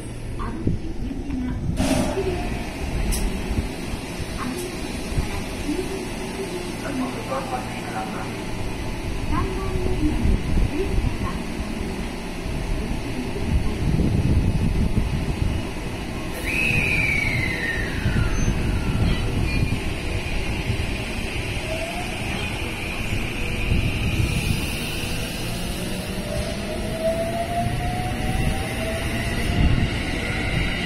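JR West 223 series 2000 electric multiple unit running out of the station: a steady rumble of wheels on rail. Its traction motors whine in pitched tones that slide, one falling sharply about halfway, then several rising together near the end as a train gathers speed.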